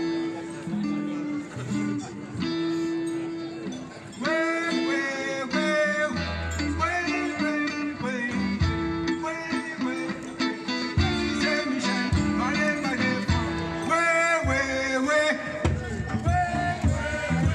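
Live band playing: a bass guitar line with electric guitar and percussion, joined about four seconds in by a higher melody line over it.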